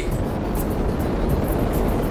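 Rocket-launch sound effect: a steady, even rumbling noise, heaviest in the low end, with no break.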